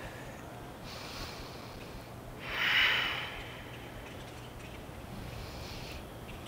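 A person breathing deeply through the nose during a held yoga stretch: a soft breath about a second in, then a louder one between two and three seconds in.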